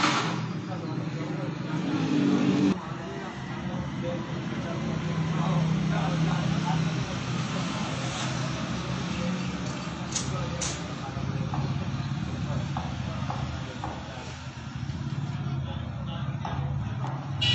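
Steady background of motor traffic with indistinct voices: a low engine drone under a general street-noise wash, with two short clicks about ten seconds in.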